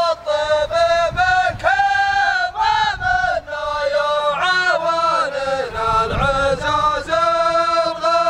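Male voice chanting a melodic Arabic chant in long held, wavering notes, phrase after phrase, with no instruments or drums.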